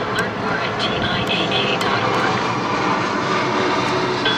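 Steady, loud engine running with an even rushing noise, with faint radio talk underneath.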